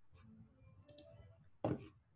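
Faint clicks from operating a computer, a pair about a second in, while screen sharing is being restarted; a short louder noise comes near the end.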